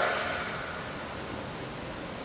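Steady, even background hiss of room tone and recording noise in a pause in speech, with the tail of the last word fading out in the first half second.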